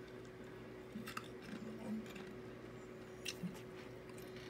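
Pringles potato crisp being chewed: faint crunching, with short crackles about a second in and again just past three seconds, over a faint steady hum.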